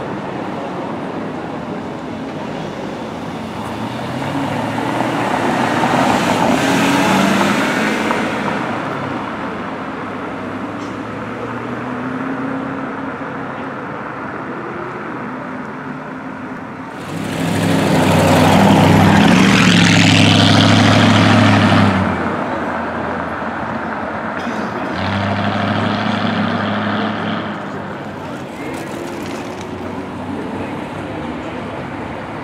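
Sports cars driving off past the listener one after another, engines revving as they accelerate. A first car passes about a quarter of the way in, a much louder one goes by hard on the throttle a little past halfway, and a shorter, quieter pass follows near the end.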